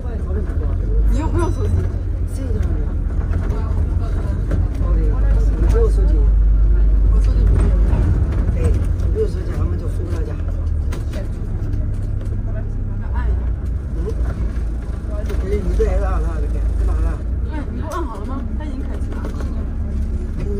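Double-decker bus running through city traffic, heard from inside on the top deck: a steady low rumble from the engine and road, a little louder for a few seconds about a quarter of the way in, with passengers' voices chatting over it.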